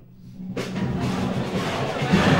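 Opera orchestra playing storm music: a quiet low held note, then about half a second in a loud, dense swell with timpani and percussion that keeps building.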